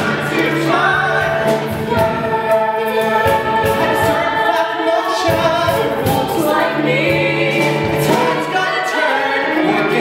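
A small mixed ensemble of singers performing a musical theatre number live, accompanied by piano and drums, with several voices singing together.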